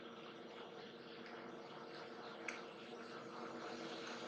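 Yaskawa Motoman robot arm's servo motors giving a faint steady hum as the arm jogs itself to its second home position, with one small click about two and a half seconds in.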